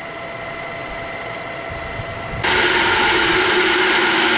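Steady machinery hum in a water treatment plant, with a faint high whine. About two and a half seconds in it steps up abruptly to a much louder, rougher hum carrying a low steady tone.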